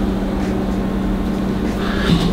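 A steady machine hum with a constant low tone over an even rumble, unchanging throughout.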